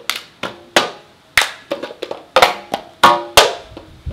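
Hand claps and hard plastic cups banged and set down on a glass tabletop in a rhythmic clapping cup game: a run of sharp claps and knocks, about two to three a second.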